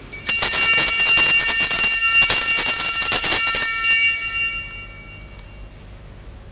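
Altar bells (Sanctus bells) shaken rapidly for about three and a half seconds, then left ringing until they fade. They signal the elevation of the chalice at the consecration.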